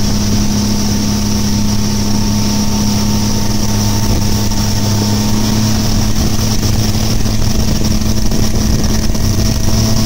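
Mercury outboard motor running steadily at speed, towing a rider on a rope behind the boat; a constant, unbroken hum.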